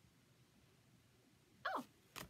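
Near silence, just room tone, then near the end a woman's short exclamation, "oh", falling in pitch.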